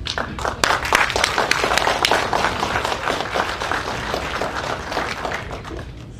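Audience applauding: many hands clapping, swelling within the first second and gradually dying away toward the end.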